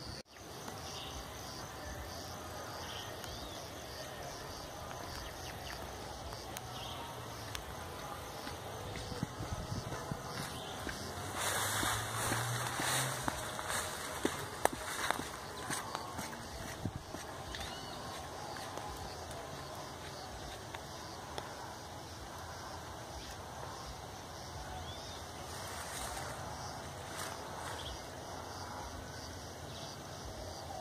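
Steady outdoor background noise with faint bird chirps. About twelve seconds in, a louder rustling with a few sharp clicks lasts around three seconds: footsteps brushing through tall grass close to the microphone.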